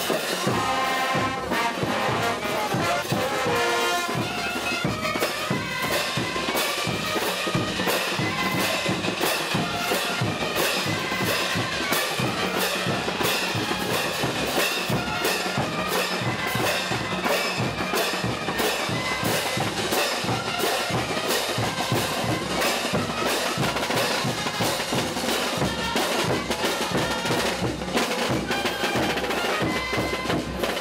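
Bolivian marching brass band playing a dance tune with a steady beat: trumpets, trombones and tubas over bass drums, with dancers' hand cymbals clashing on the beat.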